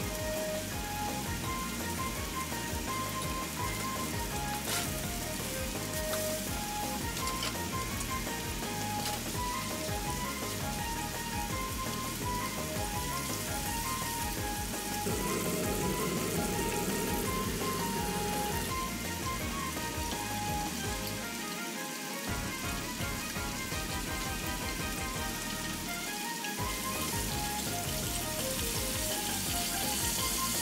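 Food sizzling in hot oil in pans, under background music with a light melody of short notes. The sizzling is loudest for a few seconds around the middle, while coated chicken pieces fry in oil.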